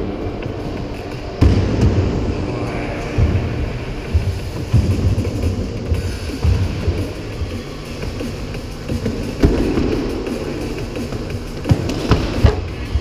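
Music with a heavy, uneven low beat, with a few sharp thumps, the loudest about a second and a half in and near the end.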